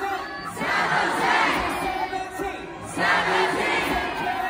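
Large concert crowd of fans cheering and screaming, in two loud swells with a brief dip between them.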